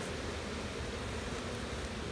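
Steady wind noise on the microphone: an even rushing hiss with low buffeting underneath.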